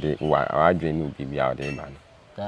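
A man speaking in conversation, close to the microphone.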